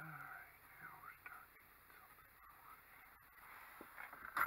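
Near silence, with a brief, faint mutter of a person's voice at the start.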